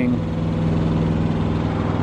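A semi truck's diesel engine idling, a steady low hum.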